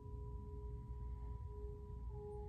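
Soft ambient background music of a few sustained pure tones held steady, over a low hum.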